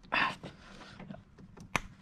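A short breath, then faint handling and one sharp click near the end from a small quarter-inch ratchet with a T30 bit being worked on a screw in a cramped spot on the engine.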